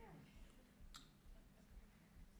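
Near silence: faint room tone of a lecture hall, with one short, sharp click about a second in.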